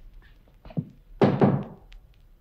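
Knocking on a door, a radio-play sound effect: one knock about three-quarters of a second in, then a louder, quick run of knocks.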